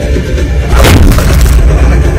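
Action-film background score with heavy bass, cut by a loud boom hit about three-quarters of a second in.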